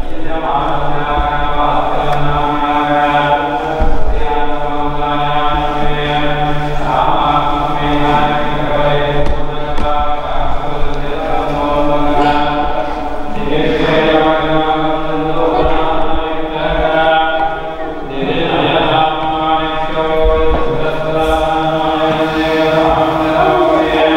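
Hindu mantra chanting: a voice intoning long, drawn-out lines with hardly a break between them.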